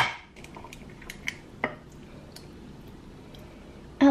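Eggs being cracked into a drinking glass on a marble counter: one sharp tap, then several lighter taps and clicks over the next second and a half.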